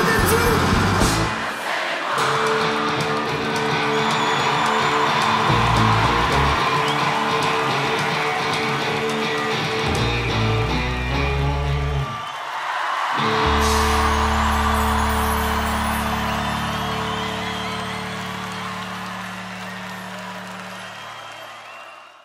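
A live rock band ending a song with long held chords over a crowd's cheering and whooping. The drums stop about a second in, the sound breaks off briefly around the middle, and a final long chord then fades out while the cheering goes on.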